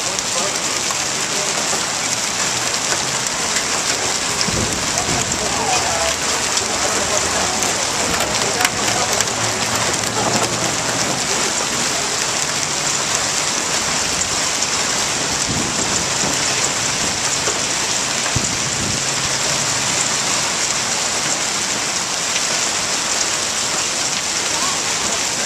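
Heavy rain mixed with small hail falling on pavement and parked cars: a steady, dense hiss with a fine patter of tiny impacts.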